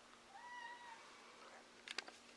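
A cat gives one faint, short meow, followed by a short click near the end.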